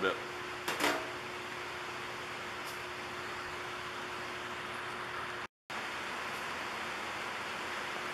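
Steady workshop room hiss with a faint low hum, after a brief knock just under a second in. The sound drops out completely for a moment about five and a half seconds in.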